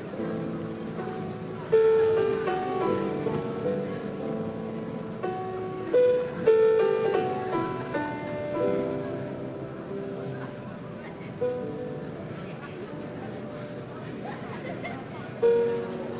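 Solo piano playing on a 1915 Steinway & Sons model D concert grand: a flowing passage of single notes and chords that ring on and fade, with louder struck chords about two seconds in, twice around six seconds, and again near the end.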